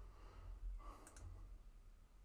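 Two quick computer mouse clicks close together about a second in, selecting a file in a software dialog, over a faint low room hum.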